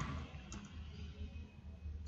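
A single faint click about half a second in, from advancing a presentation slide, over a low steady hum.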